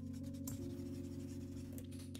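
Soft background music with sustained chords, over the scratching of a stylus on a drawing tablet in quick repeated strokes.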